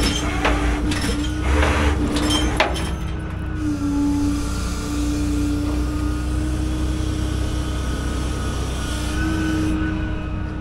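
A rollback tow truck's engine and hydraulics run steadily with a droning whine that dips slightly in pitch partway through and rises again near the end. A few sharp metal knocks and clanks come in the first three seconds as the pickup rolls back on its wheel skates.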